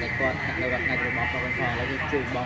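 A man talking in Khmer, over a steady high-pitched background hum.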